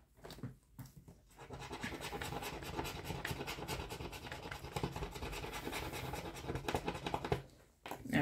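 Silver scratch-off coating on a paper scratch-off circle being scraped away with a pointed pen-like tool: a few light taps, then rapid continuous scratching for about six seconds that stops shortly before the end.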